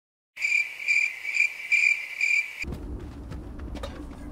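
A cricket chirping: five evenly spaced chirps, about two a second, that cut off abruptly a little past halfway. A low steady rumble follows.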